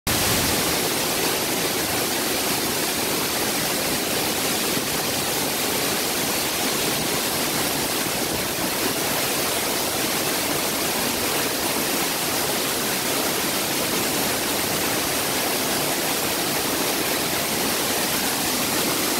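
Waterfall pouring in heavy flow, a steady loud rush of falling water, swollen by recent rain.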